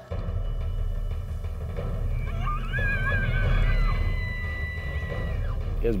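Bull elk bugling in answer to a cow call: starting about two seconds in, a whistle rises, wavers, and then holds a high note for about three seconds before dropping off. Under it runs a low steady rumble.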